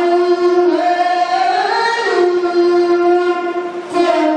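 A young man's solo voice chanting a melismatic religious melody into a microphone. He holds one long note, glides up and back down around the middle, then holds a long note again, with a short break just before the end.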